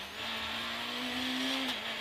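Peugeot 106 rally car's engine pulling hard under full acceleration, heard from inside the cabin, its pitch climbing steadily in second gear, then dropping suddenly near the end as it shifts up to third.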